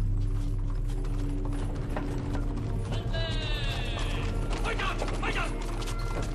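Huge studded palace doors swinging open: after a sudden start comes a steady low rumble with rapid ratcheting clicks from the mechanism, and a brief high squeal about three seconds in.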